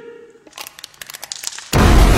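Film sound effect of an explosion: a run of sharp cracks and crackles, then a sudden loud blast near the end.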